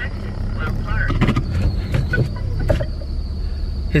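A loud car engine running, heard from inside the cabin as a steady low rumble, with a faint high whine and a few small clicks and knocks.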